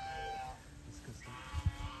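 Domestic geese honking: a short, steady call at the start and a longer, harsher one about a second in, with a dull knock near the end.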